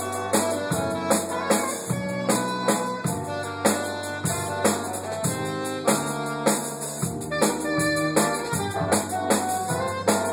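Live jazz-fusion band playing the opening bars of a piece just after a count-in: drum kit with steady strikes, held electric bass notes, keyboard and saxophone.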